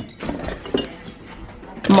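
A refrigerator door is pulled open with a click, followed by a short rustle of plastic-bagged food being moved about inside.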